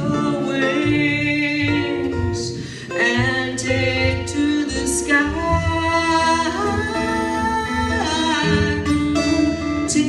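A woman singing long, drawn-out notes with no clear words, accompanied by an acoustic guitar. The voice drops away briefly about three seconds in, then carries on.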